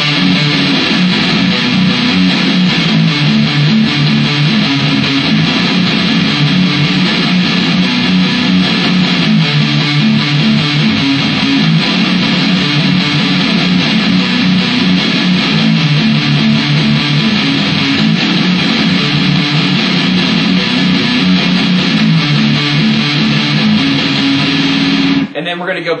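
Electric guitar played through an amplifier: a distorted, low-pitched metal riff played continuously that cuts off abruptly about a second before the end.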